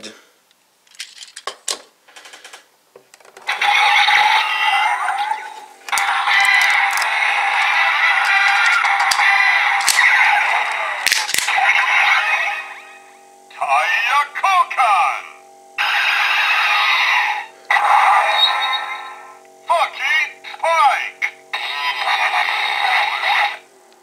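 A few plastic clicks as a Shift Car toy is set into a Shift Brace, then the Kamen Rider Drive transformation-belt toy plays its electronic sounds through its small speaker: a recorded voice calling out over music and effects, starting and stopping in several bursts.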